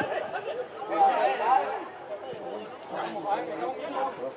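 Indistinct voices of several people talking and calling out close by, louder in the first two seconds and quieter after, with no clear words.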